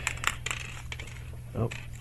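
Small airsoft hop-up parts spilling from a plastic bag and clattering onto a wooden desk: a quick run of light clicks in the first half second.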